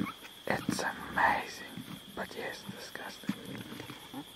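Spotted hyenas chewing and tearing at a carcass: irregular crunches and rips, loudest about a second in, over a steady high cricket trill.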